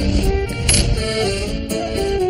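Background music: a short tune of held instrument notes with a few sharp percussive hits.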